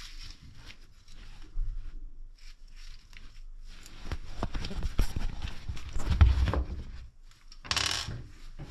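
Handling noise: scattered clicks and rustling, then a louder run of dull knocks and rubbing, strongest about six seconds in, with a short sharp rustle near the end.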